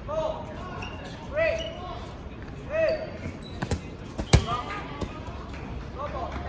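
Dodgeballs bouncing and smacking on a hard court: a few sharp hits in the second half, the loudest about four and a half seconds in. Before them come three short shouted calls.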